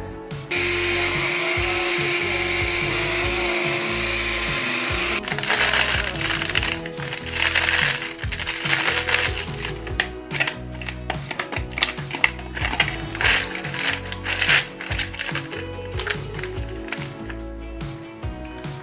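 A small electric power tool runs steadily for about five seconds. It is followed by many short, irregular scraping strokes of hand sanding on the cut wicker edge of a basket base, with background music underneath.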